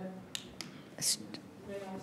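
Quiet meeting-room murmur of faint, low voices, with a few small sharp clicks and a brief hiss about a second in.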